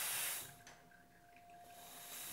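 Steam wand on a La Marzocco Strada espresso machine hissing, then cutting off about half a second in. From about a second and a half in, the hiss builds back up gradually. The wand's electronic control opens the steam valve only after a short delay.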